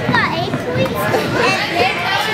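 Indistinct overlapping chatter and calls of young children and adults in a gym, with no clear words.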